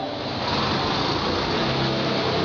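A steady engine-like rumble with a noisy hiss, like a motor vehicle running nearby, easing off near the end.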